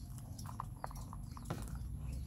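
A few light, scattered clicks and taps as small plastic toys are handled on a woven plastic mat, over a low steady background rumble.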